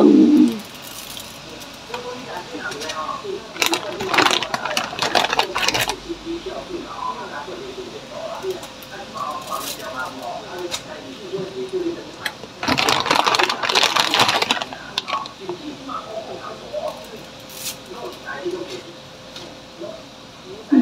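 Bundles of dry wheat noodles rustling and crackling as they are handled and laid into a wok, in two louder bursts, one about four seconds in and one past the middle. Faint voices can be heard underneath.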